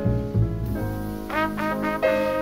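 Jazz trumpet solo, a line of changing notes over piano, double bass and drums.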